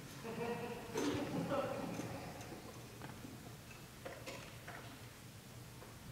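A faint voice in the first couple of seconds, then a few scattered clicks and knocks from an actor moving about a wooden stage set.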